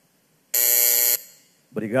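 A single electronic buzzer tone, about two-thirds of a second long, breaking a near-silent room: the presiding officer's bell marking the end of a minute of silence.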